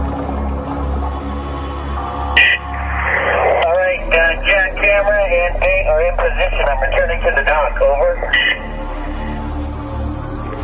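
A two-way radio transmission: a short beep, about five seconds of warbling, unintelligible voice, then another short beep. A steady low music drone runs underneath.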